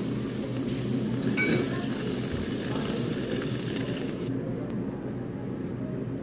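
Whipped-cream dispenser hissing as it pipes cream onto an iced drink, the hiss cutting off about four seconds in, over a steady background hum.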